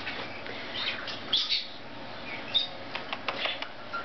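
Lovebirds chirping: short high chirps scattered through, a brief clear high note about two and a half seconds in, and a quick run of light clicks just after three seconds.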